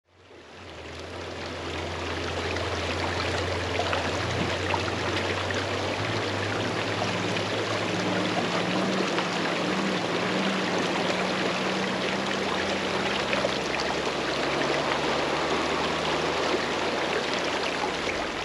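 Shallow rocky creek flowing over stones, a steady rushing babble that fades in over the first couple of seconds. A faint low hum runs underneath, changing pitch around the middle.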